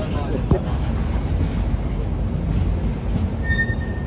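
Passenger train running on the rails, a steady low rumble throughout, with a brief high-pitched squeal near the end.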